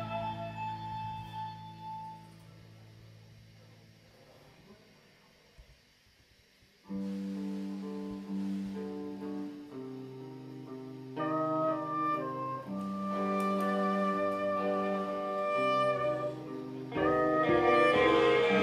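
A live band plays an instrumental passage on electric guitars and keyboards with no vocals. A held chord rings out and fades almost to silence, then about seven seconds in, sustained chords come back in suddenly and build, growing fuller near the end.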